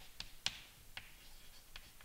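Chalk writing on a chalkboard, quiet: several sharp, irregular taps of the chalk against the board, with short faint scratches between them as a formula is written.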